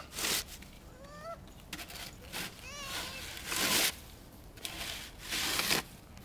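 A toddler's short high-pitched vocal calls, twice, each rising and falling, between short bursts of snow being scraped.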